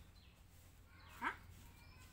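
A single short animal call sliding quickly upward in pitch about a second and a quarter in, over a faint low hum.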